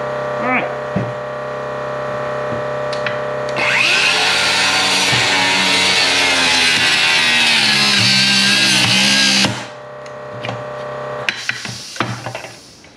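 DeWalt DCS578 60V FlexVolt cordless circular saw cutting through a shoe clamped between pieces of wood. The blade runs through wood, rubber and the Kevlar plate for about six seconds, then cuts off suddenly. A steady hum runs underneath.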